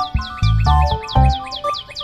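Background music with held notes and heavy bass notes, over which runs a fast series of short, high, falling chirps, about seven a second, like bird chirping.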